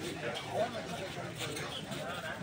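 Several men's voices calling and shouting over one another, the talk of players and onlookers around a kabaddi court.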